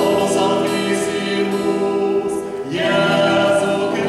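Mixed church choir singing a Mass setting in held chords, with a new phrase entering near the end, in a church.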